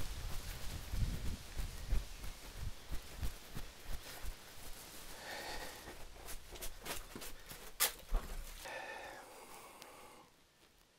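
Footsteps of a person walking across grass and then down concrete steps, with knocks from the handheld phone's microphone being bumped along the way and a sharp click a little before the end.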